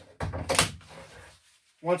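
Plastic cordless-drill battery pack slid onto its charger and knocked into place: a short scraping clatter, sharpest about half a second in, that fades within a second.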